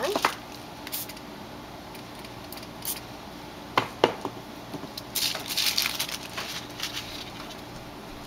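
Water spray bottle giving several quick spritzes about five seconds in, wetting Gelatos colour on a rubber stamp so that it prints like watercolour. Before that come a couple of sharp knocks, the stamp's wooden block handled on the table.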